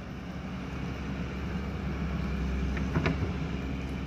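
Diesel engine of a Hyundai wheeled excavator running steadily while it works, with a short knock about three seconds in.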